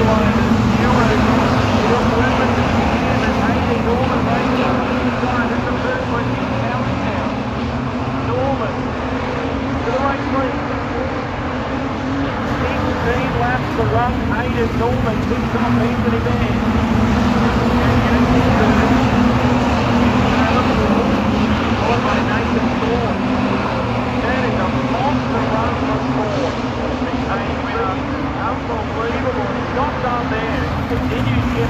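A field of Street Stock race cars running at speed around a dirt speedway oval, their engines blending into one steady drone that swells and eases slightly as the pack passes, with a race commentator's voice over the public address heard underneath.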